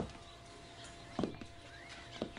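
Two short, sharp knocks, one at the start and one just over a second later, over a faint steady hum.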